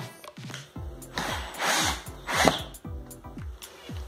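Cordless drill-driver screwing a steel wall-hanging bracket onto an MDF board, in two short runs: the first a little over a second in, the second shortly after it. Background music plays throughout.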